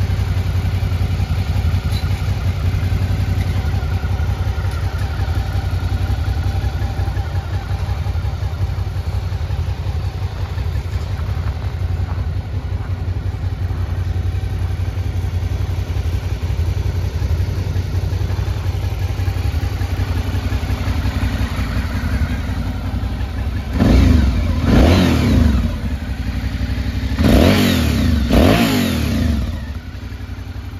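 Suzuki V-Strom 650's V-twin engine idling steadily, then blipped four times near the end in two quick pairs, the revs rising and falling back to idle each time.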